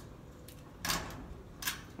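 Two short clicks of a ceiling light's pull-cord switch being tugged, about a second in and again near the end, switching the light on.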